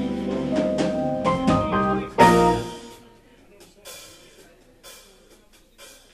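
A live smooth jazz trio of electric bass, keyboards and drum kit plays, then lands on one loud accented chord and drum hit about two seconds in that rings out. Only a few light taps are heard in the near-pause that follows.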